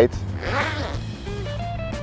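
Zipper on a golf cart enclosure's fabric window being pulled open, a short rasp about half a second in, under background guitar music.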